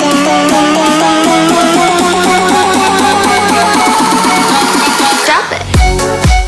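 Electronic dance music: a fast, repeating synth line climbs in pitch as a build-up, and a rising sweep near the end leads into a drop with heavy bass beats.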